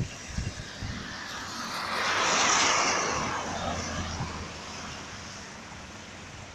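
A vehicle passing on a wet road: a rush of tyre spray that swells about two seconds in, peaks, and fades over the next few seconds, over a steady low road rumble with a few low thumps near the start.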